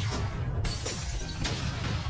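Glass-shattering sound effect over background music, a burst of breaking noise starting just past half a second in.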